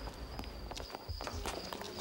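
Footsteps, a run of quick irregular steps, over a faint steady high-pitched tone.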